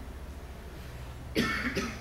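A man coughs twice in quick succession, about one and a half seconds in.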